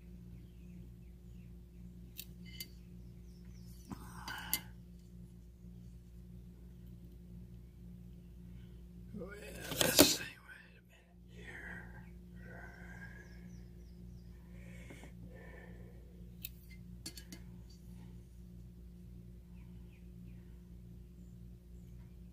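Steel gauge blocks being handled under a dial test indicator, with a few faint clicks and scrapes, over a steady low electrical hum. A louder, brief noise comes about ten seconds in.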